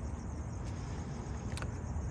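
Steady low rumble of distant road traffic, with a couple of faint clicks.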